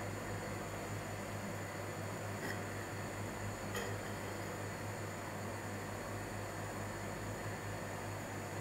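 Steady hiss with a low electrical hum: the recording's room tone. Two faint ticks come about two and a half and four seconds in.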